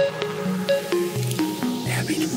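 Electronic dance music from a club mix: a synth melody of short notes stepping up and down in pitch, about four to five a second, without a kick drum.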